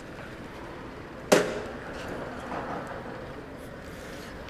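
One sharp knock about a second in, from the action camera being handled on its mount, over steady background noise.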